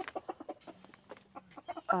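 Chickens clucking softly while feeding on scraps: a scatter of short, quiet clucks with a brief low, steady murmur in the middle.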